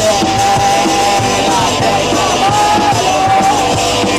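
Live punk rock band playing: a singer shouts and sings into the microphone over electric guitars, with long held notes about the first second and a half and again past the middle.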